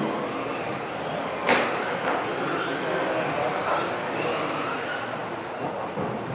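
Several radio-controlled racing cars on track, their electric motors whining and rising and falling in pitch as they speed up and slow down, with one sharp knock about a second and a half in.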